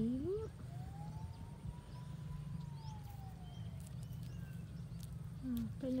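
A faint, distant siren-like wail: one tone rising slowly and falling away over about three seconds, over a steady low hum.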